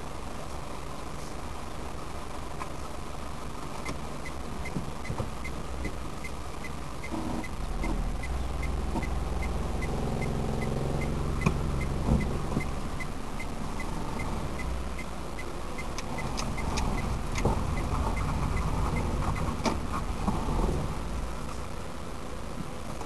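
A car's engine running at low speed, heard from inside the cabin, getting louder for a few seconds in the middle as the car moves off. From about four seconds in, an even ticking of about two to three a second, typical of the turn-signal indicator, runs almost to the end.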